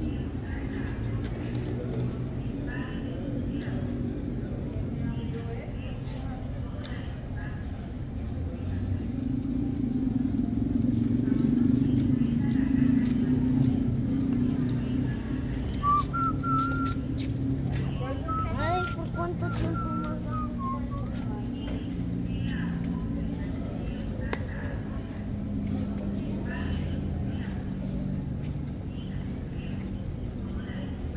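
Street background: a steady low vehicle engine rumble that swells for a few seconds around the middle, with indistinct voices. A short wavering whistle sounds a little past halfway.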